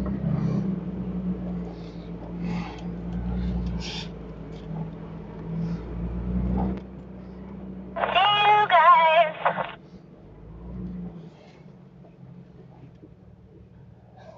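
Jeep's engine running steadily under way, a low drone that drops off about seven seconds in. About eight seconds in comes a loud voice of about a second and a half, thin and cut off in the highs like a transmission over a two-way radio.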